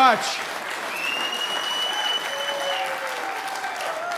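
Crowd applauding steadily, with a long, high, steady whistle-like tone held for nearly two seconds about a second in.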